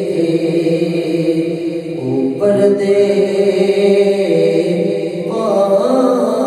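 A man's solo voice chanting a devotional recitation into a handheld microphone, holding long notes with slow melodic turns. The melody shifts about two seconds in and again near the end.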